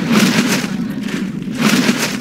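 Film soundtrack sound effects: a steady low rumble with two surges of whooshing noise, one shortly after the start and one near the end.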